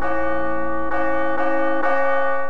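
A large tower bell swinging and tolling, struck several times less than a second apart, each stroke ringing on into the next. It is being rung to call the townsfolk to a meeting.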